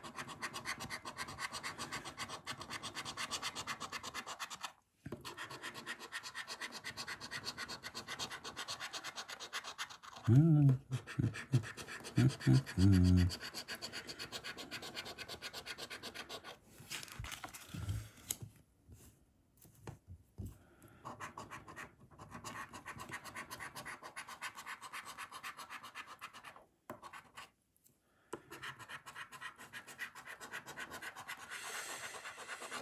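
A coin scraping the coating off scratchcard panels in long runs of rapid strokes, stopping briefly now and then. A man's voice comes in briefly about ten seconds in.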